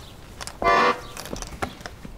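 An accordion sounding one short reedy chord, about a third of a second long, as its bellows are moved while being closed up, followed by a few light knocks as it is handled.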